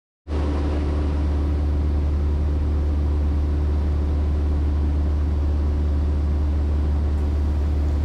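Cessna 170B's 180 hp Lycoming O-360 engine and propeller running steadily in cruise flight, heard from inside the cabin as a constant low drone. It cuts in a fraction of a second after the start.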